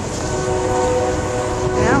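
A distant train horn holding a steady chord of several notes, over a haze of wind and rain noise.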